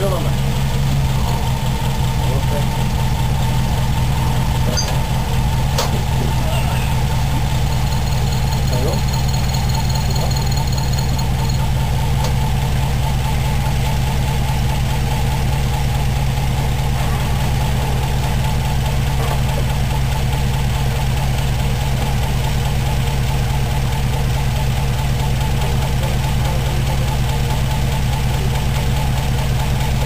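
1978 Mitsubishi Celeste's 1.6-litre four-cylinder engine, breathing through twin Dell'Orto dual-barrel carburettors and an open exhaust with a Remus muffler, idling steadily.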